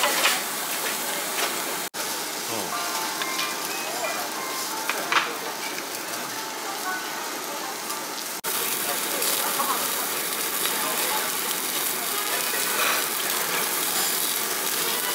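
Meat sizzling on a tabletop yakiniku grill: a steady hiss, broken by two brief dropouts about two seconds in and about eight seconds in.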